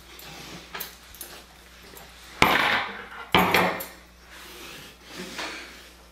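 A few sharp clattering knocks from objects being handled and bumped, the two loudest about two and a half and three and a half seconds in, with softer ones around them.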